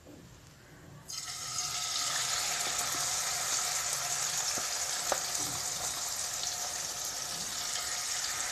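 Marinated chicken pieces going into hot oil in a kadhai. Sizzling starts suddenly about a second in and stays steady, with an occasional pop.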